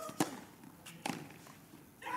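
Tennis serve: a racket strikes the ball with one sharp pop, and a fainter second racket hit follows just under a second later as the serve is returned.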